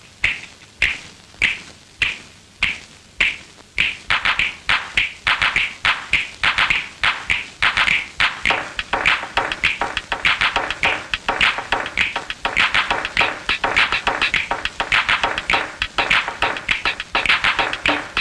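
Film song intro made of sharp rhythmic taps. An even slow beat about every half second speeds up about four seconds in into a busier, quicker pattern.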